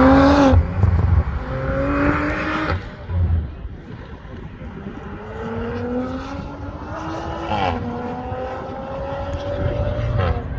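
Audi RS4's twin-turbo V6 accelerating hard past and away up the hill, its pitch climbing through each gear and dropping at several upshifts. Wind buffets the microphone.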